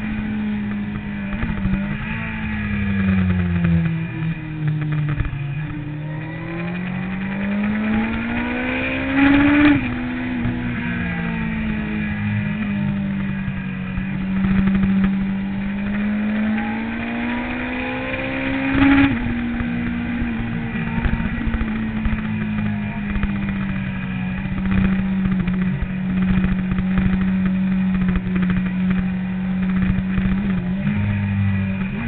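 Sport motorcycle engine heard from onboard, running steadily at part throttle; its pitch climbs twice, around nine and nineteen seconds in, and drops suddenly each time.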